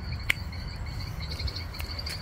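Insects chirping in a steady, rapid, high-pitched pulse over a low rumble, with one sharp click about a third of a second in.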